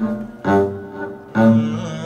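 A low-pitched plucked string instrument sounding single notes: two plucks about a second apart, each ringing out and fading, like an instrument being tried out after plugging in.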